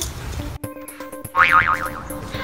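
Background music of steady held notes that begins after an abrupt cut, with a cartoon-style sound effect about one and a half seconds in: a brief high tone whose pitch wobbles rapidly up and down.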